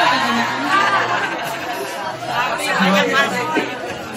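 Speech only: several voices talking at once, chattering in a large room.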